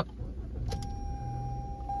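Push-button start of a 2020 Toyota Corolla's 2.0-litre four-cylinder engine: a click about two-thirds of a second in, then the engine starts quickly and settles to a quiet idle. A steady high tone begins at the click and keeps going.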